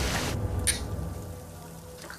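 Rain-like rush of water noise from a TV drama's soundtrack; about half a second in its hiss drops away, leaving a low muffled rumble that fades.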